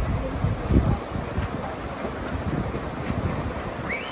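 Wind buffeting the microphone in low, gusty rumbles, over a steady hiss of outdoor noise.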